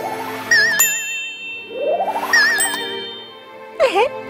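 Cartoon sparkle sound effects for a shooting star: a rising swish that ends in a bright ding with a wavering, twinkling shimmer, heard twice, over soft background music. Near the end comes a quick swoop that dips and rises.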